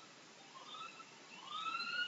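A faint siren wailing in the background, rising in pitch three times, the last rise long and levelling off near the end.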